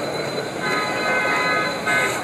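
A horn sounding a steady note of several tones at once for just over a second, starting about half a second in, over the general chatter of a crowd.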